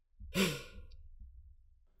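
A man's short breathy exhale of laughter, a single puff of breath about a third of a second in that trails off over the next second.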